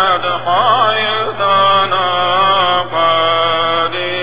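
A solo male voice chanting the Syriac Catholic liturgy: long held notes with quick melismatic turns, sung in short phrases with brief breath pauses between them.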